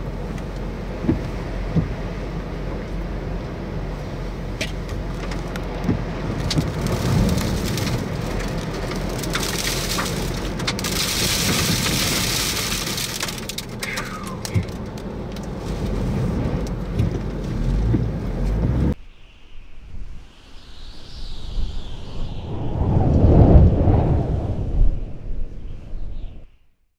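Storm wind and rain near a wedge tornado, a loud steady rush on the microphone with scattered knocks, heaviest around the middle. It cuts off suddenly about two-thirds of the way in, and a logo sound effect follows: a whoosh, then a deep boom near the end.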